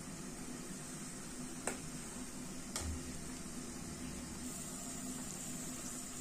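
Tomato masala and water boiling in an open pressure cooker on a gas stove: a steady, soft hiss with two faint clicks, about two and three seconds in.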